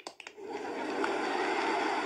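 A man's joints cracking and popping, played as a comedic sound effect that sounds like microwave popcorn: a few separate pops, then a dense steady crackle from about half a second in.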